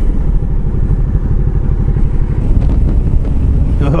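Motorcycle engine running steadily under way, heard from the rider's helmet as a low rumble.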